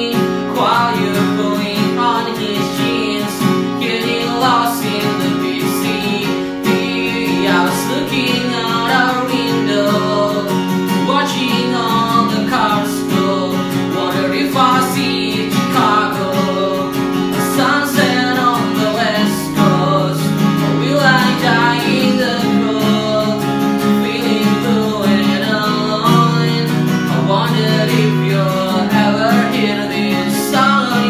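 A man singing a pop-punk song over a strummed acoustic guitar with a capo on its neck, steady rhythm throughout.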